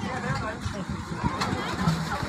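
Several people's voices talking over one another, with a steady low rumble underneath and a sharp knock about one and a half seconds in.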